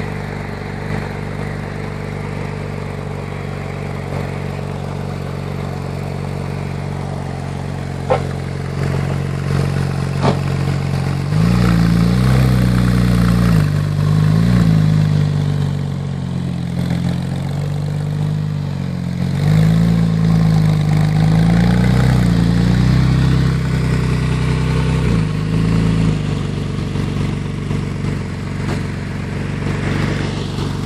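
Porsche 996 911 Turbo's twin-turbo flat-six with an AWE Tuning exhaust idling steadily, then from about eleven seconds in running louder under light throttle, its note rising briefly in small blips several times before settling back near the end.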